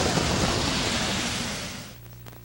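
Even rushing background noise of the racetrack broadcast, with no distinct events, fading out over the last half second.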